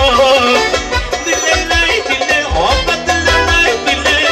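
Live band music played on electronic keyboards through a PA: a fast, ornamented melody over a steady electronic beat, with the tail of a sung line with vibrato just at the start.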